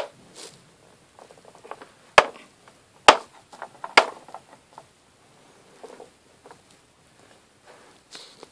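Small plastic Littlest Pet Shop figurines handled by hand on a plastic playset: a few sharp clicks and taps, about two, three and four seconds in, with faint scratching and rustling between them.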